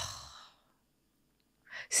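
A woman's sigh: a breathy exhale that starts at once and fades out within about half a second, followed by near silence until speech begins near the end.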